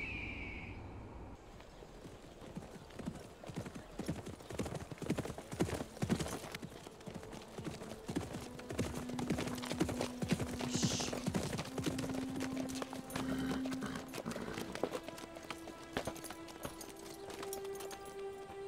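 Horse hooves clip-clopping on the ground, a dense run of irregular hoof strikes. About halfway through, background music comes in with long held low notes.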